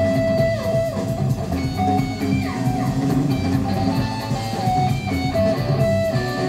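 Live rock band playing loudly: an electric guitar carries sustained notes and several short downward slides over bass guitar and drums.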